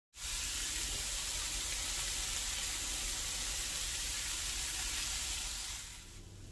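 Lamb liver strips with peppers and onion sizzling in a hot pan: a steady sizzle that fades away near the end.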